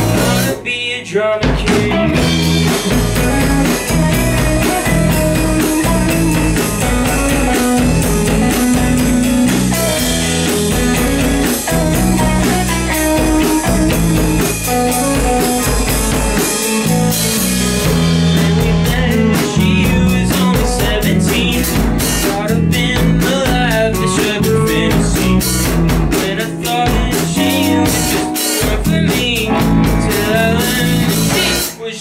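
Indie rock band playing live: electric guitars, one a Fender Stratocaster, over a drum kit. The band drops out briefly about a second in, then comes back in full.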